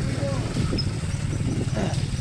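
Motorcycle engine running at low speed in a low gear, a steady low rumble with quick even firing pulses.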